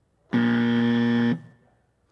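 Quiz countdown timer's time-up buzzer: one steady electronic buzz about a second long, signalling that the answer time has run out.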